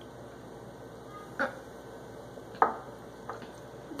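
A person gulping soda from a glass bottle: two short swallowing sounds about a second apart.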